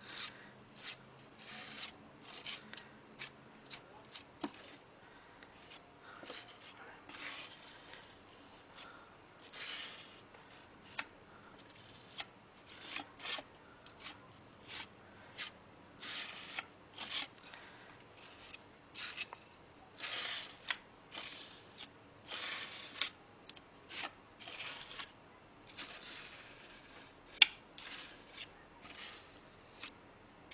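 Metal palette knife scraping heavy gel matte medium across a stencil on paper, in a long series of short, irregular strokes. A single sharp tick comes about three seconds before the end.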